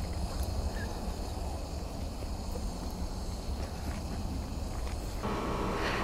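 Steady low rumble of outdoor background noise; about five seconds in it gives way to a steadier hum with a few faint tones.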